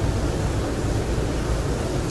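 Steady low rumbling noise with no distinct events: the room tone of a large, crowded prayer hall.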